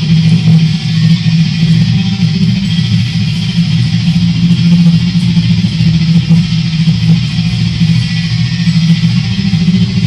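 Heavy metal band playing, loud distorted electric guitars over bass, continuous and without a break.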